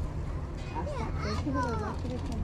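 Indistinct voices of people nearby, some high-pitched and rising and falling in the second half, over a steady low background rumble.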